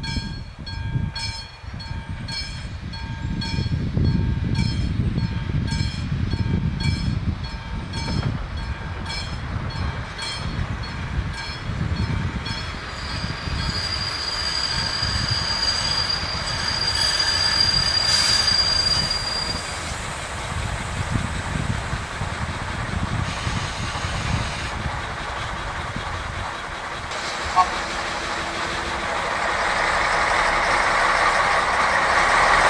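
Vintage M131.1 railcar approaching along the track, its engine and running gear rumbling and growing louder. Through the first half a repeating ringing ding sounds about every three-quarters of a second, then stops. Around the middle a high steady squeal runs for several seconds.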